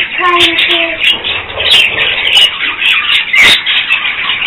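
Budgerigars chattering and chirping continuously, with a sharp, loud burst about three and a half seconds in.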